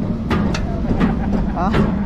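Roller coaster train being pulled up a vertical chain lift hill: the lift chain runs with a steady low drone and several sharp clacks.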